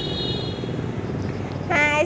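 A steady low rumble, with a brief high steady tone at the start; near the end a woman's high-pitched voice begins.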